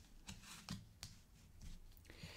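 Faint handling and shuffling of a tarot deck, with a few soft, irregular card clicks and slides.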